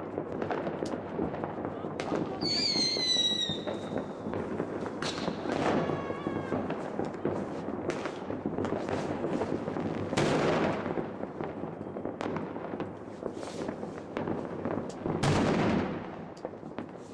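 New Year's Eve fireworks and firecrackers going off: an irregular run of bangs and crackles, with a louder bang about ten seconds in and another near the end. A high whistle falls in pitch about two and a half seconds in, and a fainter falling whistle follows around six seconds.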